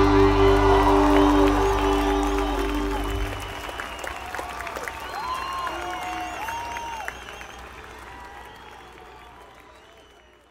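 A live rock band's last held chord ringing out and stopping about three seconds in, while the audience cheers, whistles and applauds. The cheering dies away toward the end.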